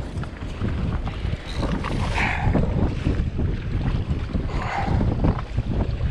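Wind buffeting the microphone in uneven low gusts, with choppy water lapping around the hull of a drifting personal watercraft.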